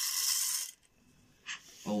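Dried popcorn kernels poured from a measuring cup into the metal chamber of an electric popcorn maker: a short rattling patter of hard kernels on metal lasting under a second, followed by a small click about a second and a half in.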